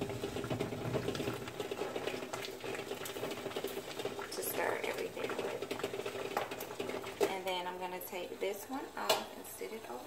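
Chopsticks stirring melted candle wax in a metal pouring pitcher, with scattered light clinks against the pitcher, over a steady hum that stops about eight seconds in.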